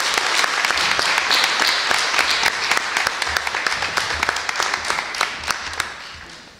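An audience applauding, a dense, steady patter of many hands clapping that thins and fades out near the end.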